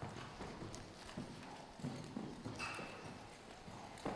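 Hoofbeats of a horse turning in a western spin on soft arena sand: quiet, muffled thuds of the footfalls.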